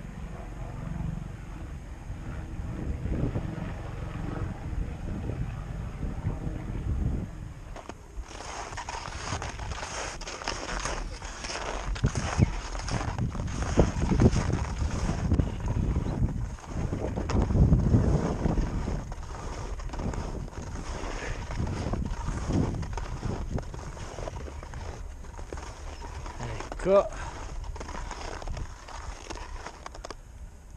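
Skis scraping and hissing over groomed, corduroy-textured snow during a downhill run, with wind rumbling on the body-mounted camera's microphone. About eight seconds in, the scraping grows louder and harsher, with rough rasping edges as the skis carve.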